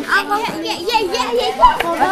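Several children's voices at once, talking and calling out over one another: classroom hubbub.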